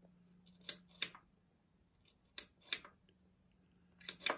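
Line 6 Pod Go footswitch pressed and released twice, each press a pair of sharp clicks about a third of a second apart, over a faint steady low hum.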